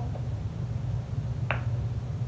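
A single short, sharp click about one and a half seconds in, over a steady low hum.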